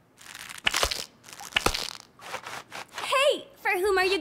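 Cartoon foley of a character grooming: short crinkly, crunching rustles and a couple of sharp clicks, then a brief vocal sound with a falling pitch near the end.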